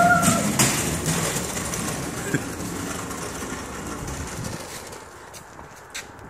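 Hand truck's wheels rolling over a concrete driveway, a steady rumble that fades as it moves away, with a small click about two seconds in.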